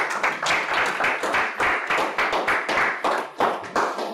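Audience applause: many hands clapping steadily, dying away right at the end.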